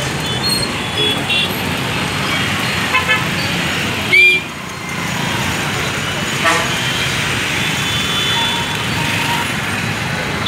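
Busy street traffic: motorbikes and a bus running amid crowd voices, with vehicle horns tooting several times, the loudest a short high toot about four seconds in.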